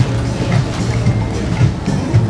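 Music with a steady, pulsing bass beat.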